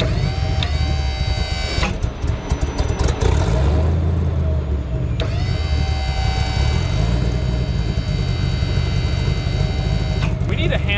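Tow truck engine running while its hydraulic boom is worked: a whine rises quickly and holds steady for under two seconds, stops, then rises again about five seconds in and holds. A few knocks come in the gap.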